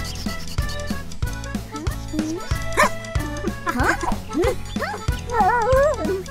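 Cartoon background music with a steady beat, joined from about halfway by short, warbling voice-like calls that bend up and down in pitch, the loudest near the end.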